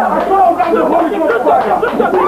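Several people's voices overlapping, talking and calling out at once, with no single voice standing out clearly.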